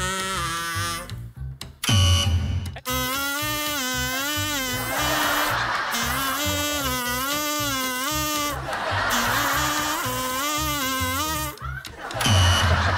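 A plastic toy trumpet blown to play a wavering, buzzy tune note by note over a backing track with a steady low beat. There is a short loud burst about two seconds in.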